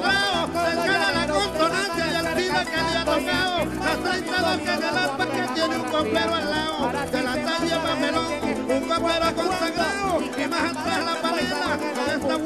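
Instrumental break of Venezuelan llanero (joropo) music led by a harp, playing quick melodic runs over a pulsing bass rhythm.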